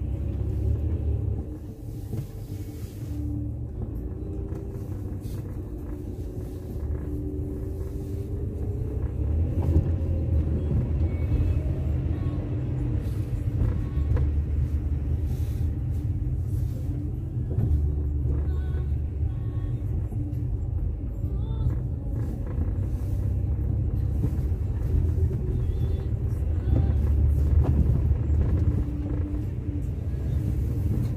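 Steady low rumble of a car driving slowly on a snow-covered road.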